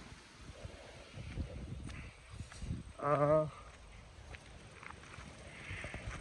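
A farm animal bleating once, a single quavering call of about half a second, about three seconds in, over a low rumbling background.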